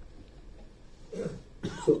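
Quiet room tone in a pause, then a single short cough a little over a second in.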